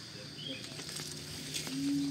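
Quiet outdoor background: a steady high-pitched insect drone over a faint low hum. A short low vocal hum comes near the end.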